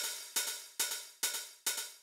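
A Roland TR-909 hi-hat sample played back in Ableton Live: five evenly spaced, bright hits about two a second, each ringing briefly and fading before the next. The sample has been sped up in Live's Beats warp mode, which keeps each attack clean and sharp.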